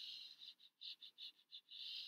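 Faint salt-shaker shaking: a short hiss, then a quick run of small shakes at about six a second, then another longer hiss.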